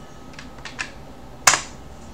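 Computer keyboard keystrokes: three light key clicks in quick succession, then one louder, sharper key strike about a second and a half in.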